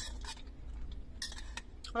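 Metal fork scraping and clinking against a food container, in short strokes at the start and about a second in, with a click near the end.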